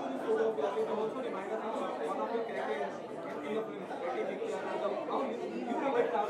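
Indistinct voices talking over one another in a room: background chatter, with no single clear speaker.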